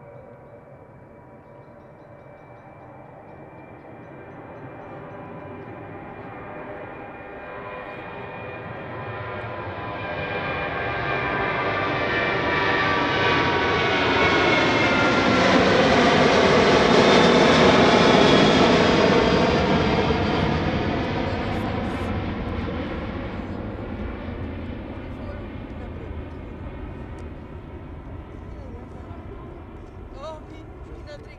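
Twin-engine jet airliner taking off and climbing out past the listener. The engine noise builds for about fifteen seconds and peaks with whining engine tones that drop in pitch as it passes, then fades away as it climbs off.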